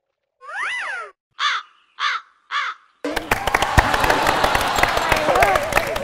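Crow-caw sound effect edited in: one longer call that rises and falls in pitch, then three short caws, the stock cue for an awkward silence after a joke falls flat. About three seconds in, a loud, dense mix of voices and clatter takes over.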